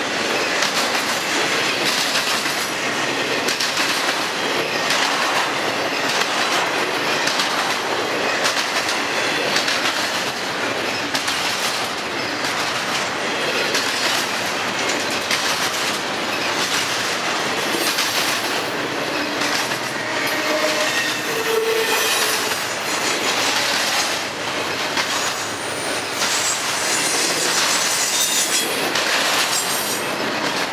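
Container and double-stack well cars of a freight train rolling past close by: a steady, loud rolling noise of steel wheels on rail with irregular wheel clatter, and a few brief high wheel squeals in the second half.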